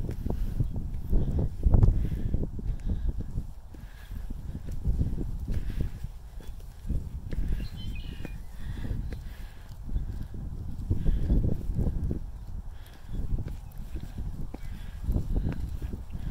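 Footsteps climbing concrete outdoor stairs, with wind rumbling on the phone microphone. A brief high chirp sounds a little past halfway.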